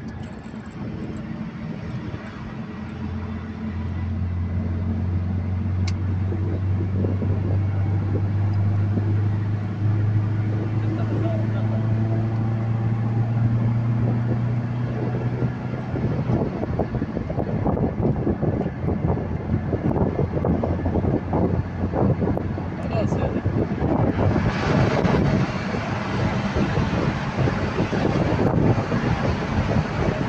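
Car driving, heard from inside the cabin: a steady low engine drone that rises slightly in pitch about a third of the way through, then gives way to rougher tyre and road noise. For the last five seconds the noise is louder and hissier.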